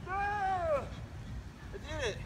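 A short cry that rises a little and then falls away in pitch over under a second, followed by a briefer falling cry near the end.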